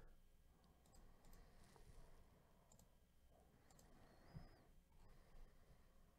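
Near silence with a few faint computer mouse clicks spread through it.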